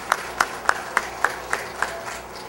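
Handclaps, evenly spaced at about three or four a second, about seven in all, over a low room hum: a sparse welcome applause led by one clapper.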